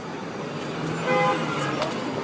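A short vehicle horn toot about a second in, over steady street traffic noise.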